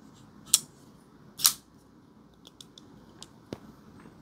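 Folding pocket knife clicking as the blade and lock bar are worked by hand: two sharp clicks about a second apart, the second louder, then a few faint ticks and a small click near the end. The lock bar is one the owner finds cramped and hard to push off.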